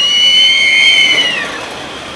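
Roller coaster riders screaming: two high voices held together for about a second and a half, gliding up at the start and dropping away at the end.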